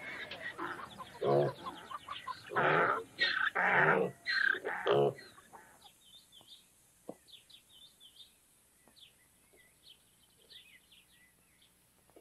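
A loud commotion of animal squeals and shouting, with pigs among the animals, for about five seconds. Then it falls quiet, leaving small birds chirping and a few faint snaps.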